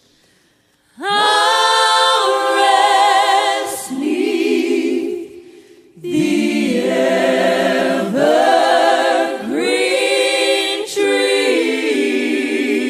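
Several voices singing a gospel song in close harmony, unaccompanied, with vibrato on long held notes. It starts about a second in after a near-silent gap and runs in phrases with short breaths between them.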